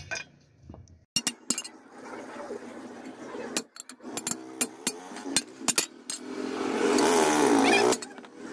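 Hammer tapping a steel sheet on an anvil block: about ten sharp metallic clinks at irregular spacing. In the last second or two a louder, sustained rushing sound of unclear source builds and holds.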